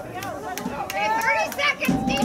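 Several voices shouting and calling out, overlapping, louder from about a second in.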